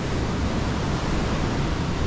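Steady, even rushing of canal water pouring fast through the cross regulator's gates.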